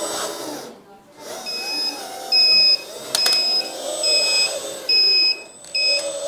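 Hydraulic pump motor of an RC articulated dump truck whining, its pitch rising and falling as the steering is worked, since steering is mixed to start the pump. From about one and a half seconds in, a high electronic beep repeats about once a second over it, with a sharp click about three seconds in.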